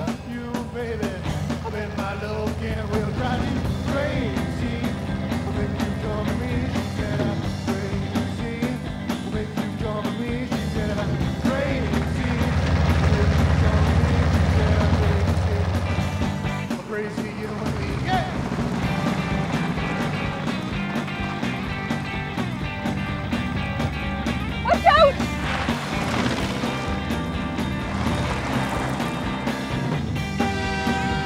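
Rock music soundtrack with guitar, louder for a few seconds around the middle, and a brief loud sound with quick pitch glides about twenty-five seconds in.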